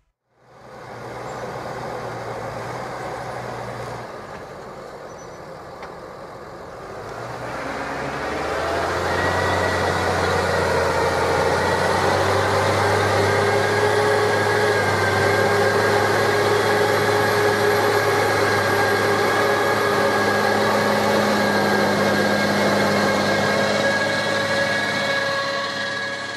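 New Holland T7 210 tractor's six-cylinder diesel engine running under load, pulling a rotary harrow across the field. It grows louder about eight seconds in as the tractor comes close, then holds steady with a high whine over the engine.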